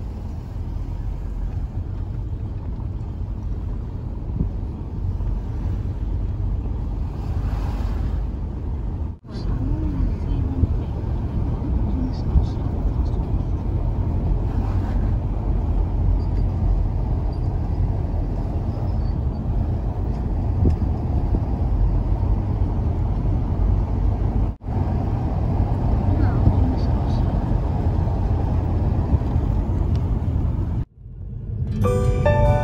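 Steady low rumble of a car's engine and tyres on the road, heard from inside the moving car. It cuts out briefly twice, about nine seconds in and again near twenty-five seconds.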